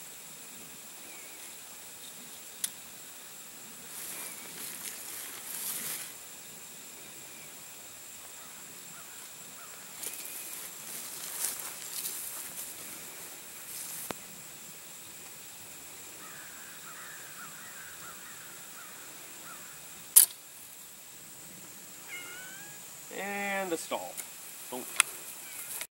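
Quiet open-air ambience with faint rustling swells and a few sharp clicks, the loudest one about twenty seconds in. Near the end, a short whining, voice-like call.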